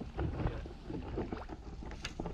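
Water sloshing and slapping against a plastic fishing kayak's hull as a hooked alligator gar tows it, in irregular splashy knocks, with wind rumbling on the microphone.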